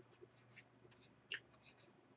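Near silence: room tone with a few faint, short ticks, one a little louder about a second and a half in.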